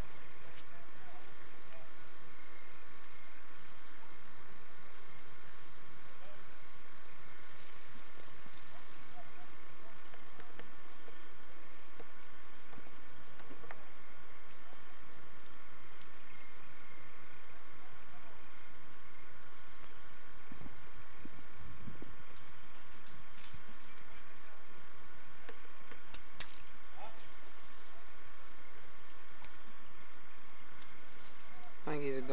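Steady high-pitched hum and hiss throughout, with a couple of low bumps about 21 seconds in and a faint click a few seconds later.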